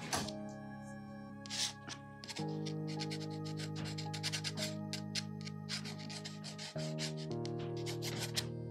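Glass dip pen scratching over drawing paper in many short, quick strokes, heard over soft background music of sustained chords that change twice.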